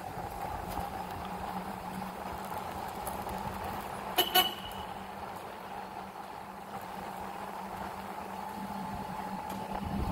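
Golf cart driving along, with a steady hum and whine over rolling noise. A short horn toot in two quick pulses just after four seconds in.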